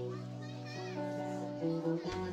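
Live rock band with electric and acoustic guitars holding a sustained chord over a steady bass note. A high voice calls out briefly just under a second in, and a new strummed attack comes in at the very end.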